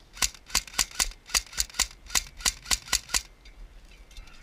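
An AK-style airsoft electric rifle (AEG) fires about a dozen single shots in quick succession, three to four a second at uneven spacing, and stops about three seconds in.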